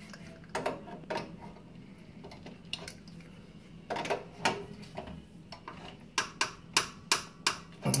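Metal clicks of two spanners working a brass compression nut on a heater's service valve as it is tightened onto the copper pipe: a few scattered clicks at first, then a quicker run of clicks in the last two seconds.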